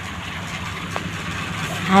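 Persian cat purring close to the microphone, a steady low pulsing rumble, with a faint tick about a second in.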